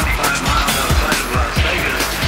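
Progressive psytrance music: a steady kick drum a little over two beats a second under dense, layered synths.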